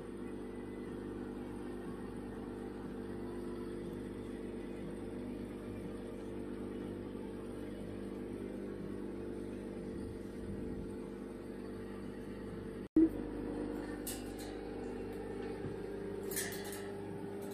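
Steady electrical hum of a running household appliance, with a sudden click and a brief dropout late on, followed by a few faint high scrapes.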